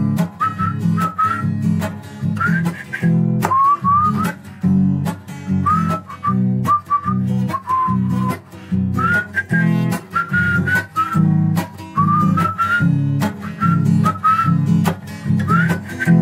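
Acoustic guitar strummed in a steady rhythm under a whistled melody, its notes often sliding up into pitch. An instrumental passage of a bard song, with no singing.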